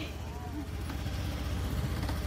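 A motor scooter's small engine runs steadily at low revs as it pulls away with its riders, with a faint voice in the background.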